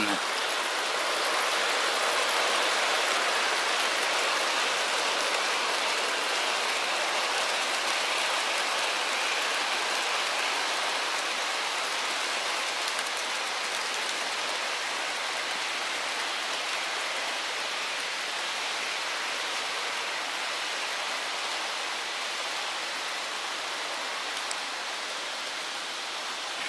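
Several HO scale model trains running at once: a steady rushing whir of metal wheels on the rails and the locomotives' motors, easing slightly quieter toward the end.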